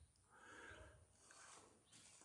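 Faint, distant farm-animal calls heard twice: a longer call in the first second and a shorter one about a second and a half in.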